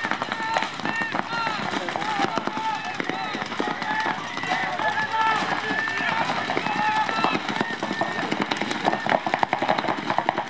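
Several voices shouting calls over one another, over rapid popping of paintball markers firing, with the popping densest near the end.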